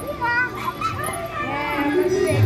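Children's voices, several at once, talking and calling out over one another in high pitch.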